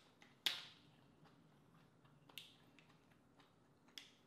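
Plastic water bottle handled and its screw cap twisted open: a sharp crackle about half a second in, a smaller one about two seconds later, and faint clicks of plastic in between.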